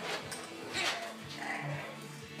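Short sounds from French bulldog puppies, heard over background music with steady held notes.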